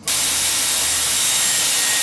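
Hot-air hair styling wand blowing steadily: a loud, even rush of air with a faint high motor whine, cutting in abruptly.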